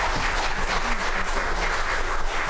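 Congregation applauding steadily after a choir and orchestra piece.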